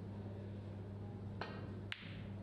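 Pool cue tip striking the cue ball once with a sharp click near the end, preceded by a softer brief sound, over a steady low hum.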